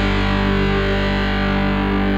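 Distorted electric guitars in a rock band recording, holding one steady, sustained chord.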